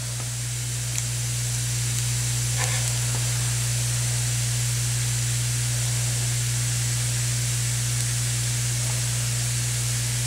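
Steady hiss with a constant low hum underneath, unchanging apart from a slight rise in level in the first couple of seconds; no distinct event stands out.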